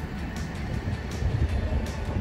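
Outdoor street sound while walking: a low rumble of wind on the microphone, with faint regular ticks about every three-quarters of a second, likely footsteps on paving.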